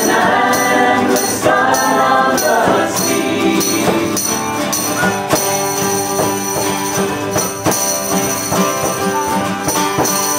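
Live folk band: several voices singing together for the first few seconds, then an instrumental passage of acoustic guitar with hand-struck frame drum beats and tambourine jingles.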